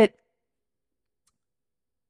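A woman's voice breaks off at the very start, followed by near-total digital silence.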